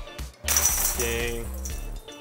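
A disc golf putter hitting the hanging steel chains of a Dynamic Discs Scout basket about half a second in, a metallic jingle and rattle that dies away over about a second as the disc drops in for a make.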